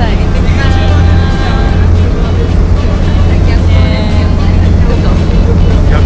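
Fishing boat's engine running steadily under way, a loud constant low hum, with a voice and music over it.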